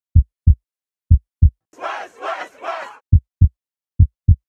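Heartbeat-style double thumps, deep and loud, coming in pairs about a second apart. In the middle they break off while a group of voices shouts three times in a row, like a team chant.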